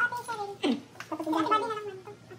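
People's excited voices making drawn-out, sing-song exclamations that glide up and down in pitch, with no clear words, and one quick falling squeal about two-thirds of a second in.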